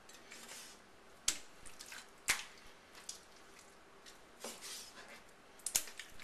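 Short, sharp taps of a chef's knife on a wooden chopping board, about four of them, as fat is trimmed from raw chicken meat. The loudest comes a little over two seconds in.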